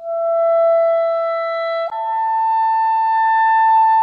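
A clarinet playing slow long tones. One steady held note steps up to a higher held note about halfway through, with a clean slur between them. It is played as an air-support exercise, with the air kept the same across the change of note.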